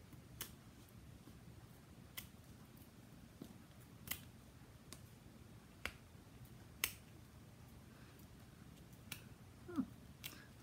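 About six sharp, faint clicks spread a second or two apart, from a craft pick-up tool and card being handled on a cutting mat as the backing papers are picked off foam adhesive dimensionals.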